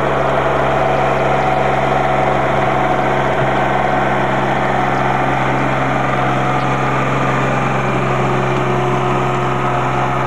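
Small John Deere utility tractor's engine running steadily while it pushes snow with a front-mounted blade.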